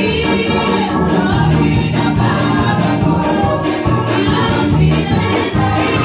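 Gospel choir singing with instrumental accompaniment, a steady beat running under the voices.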